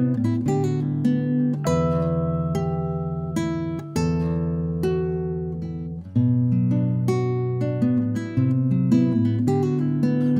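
Instrumental passage of a progressive rock song: acoustic guitar picking chords over sustained low notes, the harmony changing about every two seconds.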